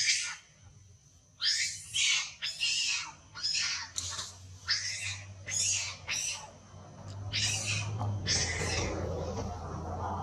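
Long-tailed macaque giving a rapid series of short, harsh, high-pitched screams, about a dozen in quick succession after a quiet first second, distress calls from a monkey being pinned down by a larger one.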